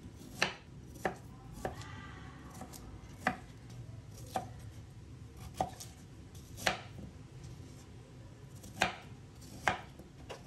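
A kitchen knife cutting through a peeled pear and striking a wooden cutting board: about nine sharp knocks at uneven intervals.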